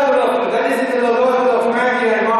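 A man singing or chanting in long held notes into a microphone, moving to a new note near the end.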